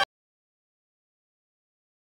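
Digital silence: the sound track cuts off abruptly at the very start and nothing follows.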